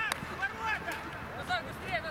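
Footballers' voices shouting calls across the pitch during play, with a sharp knock of a ball being kicked right at the start.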